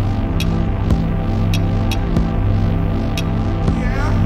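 Synth-driven electropop instrumental played live: a steady low bass drone under sustained keyboard chords, with faint regular hi-hat-like ticks.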